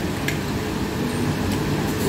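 Steady low background rumble of a restaurant dining room, with one faint click about a quarter second in.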